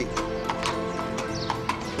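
Background music with sustained held notes, over the clopping of a horse's hooves on hard ground, about three uneven clops a second.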